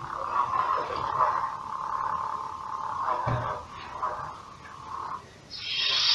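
Electronic hum from a lit toy lightsaber's sound board: one steady tone that wavers a little as the blade moves, then stops about five seconds in. A soft thump, most likely a foot landing during the move, comes about three seconds in.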